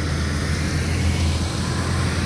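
Heavy loaded multi-axle truck's diesel engine running steadily as it pulls away up the road: a constant low drone under road and tyre noise.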